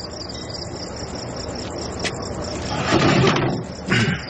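Crickets chirping steadily in a regular rhythm, with a single click about two seconds in and a short rustle of movement about three seconds in.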